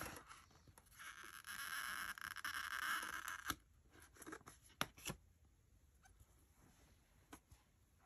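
A small adhesive letter sticker being peeled up from the photo paper to be straightened, a faint rasping peel lasting about three seconds. A few light clicks of fingers and the metal ruler on the paper follow.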